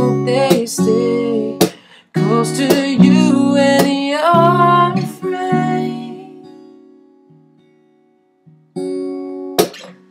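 Acoustic guitar strumming chords under a held, wavering sung note. The strumming stops briefly about two seconds in, then picks up again. A chord rings out and fades to near silence past the middle, and the strumming comes back about a second before the end.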